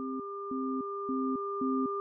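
Electronic sine tones for brainwave entrainment: two steady pure tones, one high and one mid-pitched, over a lower tone that pulses on and off about twice a second in the manner of isochronic tones. The pulses come slightly faster as it goes, and the whole sound slowly grows louder.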